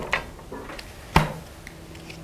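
Playing cards being cut off a deck and set onto a pile on a padded close-up mat: a faint tap just after the start and a sharper click about a second in.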